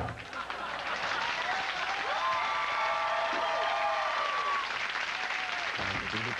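Audience applauding, with cheering voices rising and falling through the clapping.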